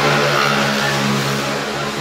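Road traffic: a vehicle engine running with a steady low hum.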